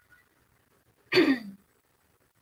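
A woman clearing her throat once, about a second in, a short sound that falls in pitch; she has a cold.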